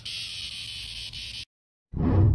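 Steady high-pitched insect buzzing that cuts off abruptly about one and a half seconds in. A short low sound from the TikTok end screen begins just before the end.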